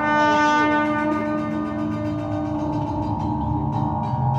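Live improvised jazz: a trombone holds one long, loud note, strongest in the first second, over keyboard and drums.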